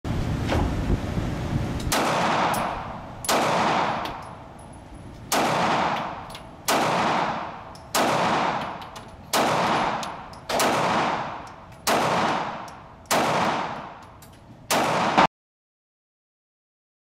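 Pistol fired about ten times at an indoor range, one shot every second or so, each shot ringing off into a long echo. A couple of seconds of low rumbling noise come before the first shot, and the sound cuts off suddenly after the last.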